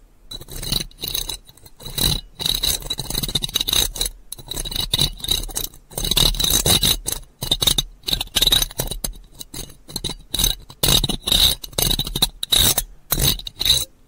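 ASMR scratching trigger: quick, irregular scratching strokes on an object, coming in bursts with short gaps between them.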